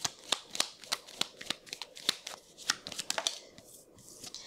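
A deck of Lenormand cards being shuffled by hand: a quick, irregular run of light snaps and flicks, a few a second, dying away near the end.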